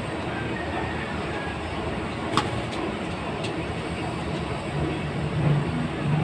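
Wind buffeting the camera microphone: a steady low rumble, with a single sharp tap about two and a half seconds in and a short low hum near the end.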